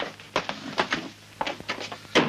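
A quick, irregular run of about ten short clicks and knocks over a faint steady hum.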